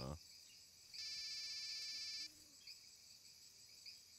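Night insects chirping steadily in a high register, with one louder, even trill lasting about a second, starting about a second in.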